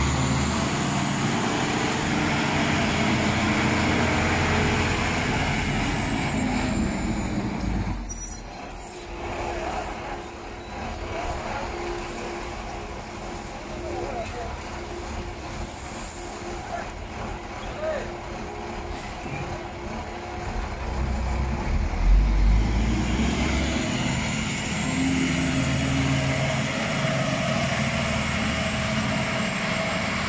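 Rear-loading garbage compactor truck running in the street, its diesel engine sounding steadily throughout, quieter for a stretch in the middle and surging louder about two-thirds of the way through.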